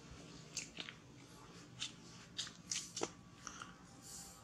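Light crackles and crunches of dry leaves and twigs as a baby macaque moves and handles things on the forest floor: a scattering of short snaps, several in quick succession in the second half.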